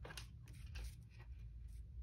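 Faint, scattered light rustles and small clicks of vellum paper being slid and lined up against a rotary paper trimmer's guide, over a low steady hum.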